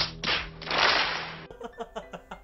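A large audience applauding, swelling to its loudest about a second in and then cut off suddenly.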